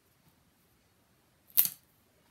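One short, sharp crackle of paper being handled and pressed down, about one and a half seconds in, otherwise near quiet.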